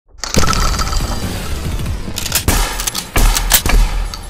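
Intro sound effects: a rain of shotgun shells clattering and tumbling down, then a few heavy hits and a shattering burst near the end, over the channel's intro music.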